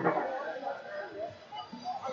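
A sudden sharp shout right at the start, then indistinct shouting voices.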